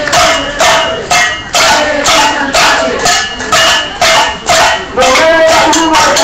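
Protest crowd shouting a chant over rhythmic percussion beats, about two beats a second.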